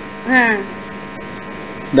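Steady electrical mains hum on the recording, with a man's short vocal syllable shortly after the start.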